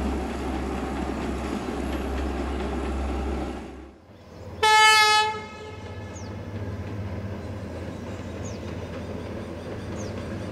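A train runs with a steady low rumble that drops away at about four seconds. Then a train gives one loud, high horn blast about a second long, followed by a quieter steady train rumble with a few short, high bird chirps.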